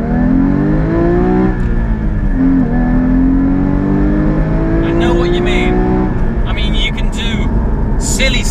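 Porsche Cayman GT4's 3.8-litre flat-six accelerating hard under full throttle. It revs up in first, upshifts to second about two seconds in, then pulls up through second until the driver lifts off about six seconds in.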